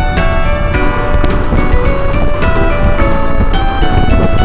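Music: a melody of held notes stepping up and down in pitch, over a steady low rumble.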